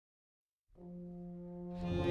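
Orchestral music from a stage-musical soundtrack: silence, then a single low note held steadily from under a second in, swelling near the end as more instruments join.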